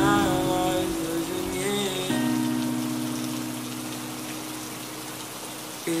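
Steady rain falling, laid over a slow song: a few sung notes in the first two seconds, then a held chord that slowly fades until the singing comes back right at the end.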